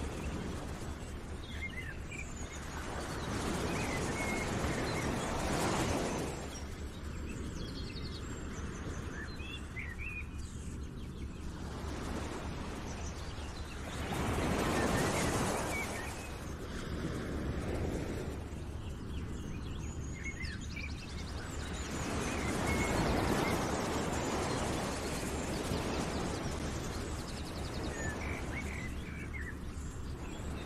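Outdoor nature ambience: a rushing noise that swells and fades in slow waves every eight or nine seconds, with small bird chirps scattered through it.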